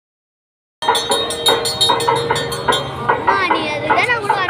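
Loud rhythmic percussion strokes, roughly five a second, that start abruptly under a second in, with a voice rising and falling over them near the end.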